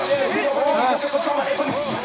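Indistinct voices talking, with no clear words.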